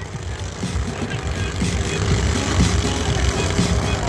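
Small lawn tractor engines running in a demolition derby, a dense mechanical din that grows a little louder over the few seconds.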